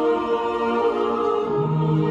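Choir singing long held chords. A lower note comes in about one and a half seconds in.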